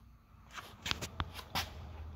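A quick run of light clicks and scuffs, handling noise from a handheld camera being moved, with the sharpest clicks about a second and a half in.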